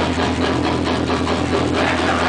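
A loud live metalcore band: distorted guitars and bass hold a steady low drone under rapid drum hits.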